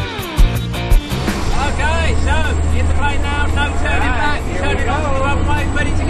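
Rock music with drum hits ends about a second in, giving way to the steady low drone of the jump plane's engine heard inside the cabin, with voices over it.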